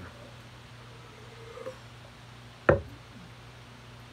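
Quiet drinking from a stemmed beer glass over a steady low hum, with a faint rising tone about a second and a half in. A little under three seconds in comes a single sharp knock as the glass is set down on the table.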